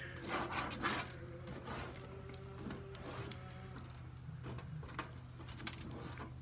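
Light clicks and crinkling as small tablets are handled and pushed from a blister sleeve, with a few sharper clicks near the end as one tablet is dropped. A steady low hum runs underneath.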